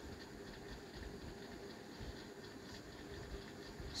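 Faint scratching of a pen writing on paper, over low steady room noise with a faint hum.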